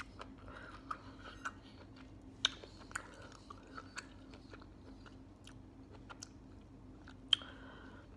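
Close-up chewing and biting of fresh pineapple spears, with scattered sharp mouth clicks; the loudest click comes near the end.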